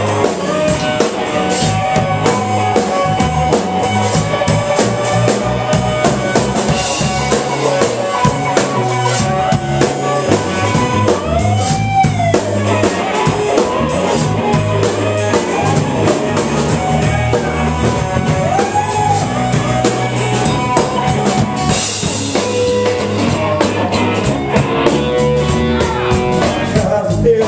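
Live blues band playing an instrumental stretch: electric guitar solo over bass guitar and drum kit, with a couple of long bent notes on the guitar.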